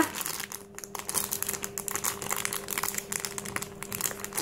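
A crinkly plastic blind-bag packet being crumpled and pulled open by hand, giving an irregular run of small crackles throughout.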